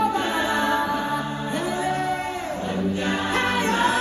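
Stage-show music: a choir singing sustained notes over instrumental backing.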